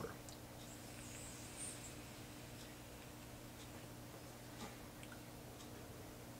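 Faint sounds of a pod vape being drawn on: a soft, high airflow hiss through the mouthpiece for the first couple of seconds, then a few small mouth clicks over a steady low room hum while the vapor is held and exhaled.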